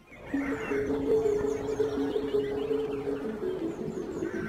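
Background music of a few low notes, held long and stepping in pitch, beginning just after a brief near-silent gap. Faint bird chirps run high above it.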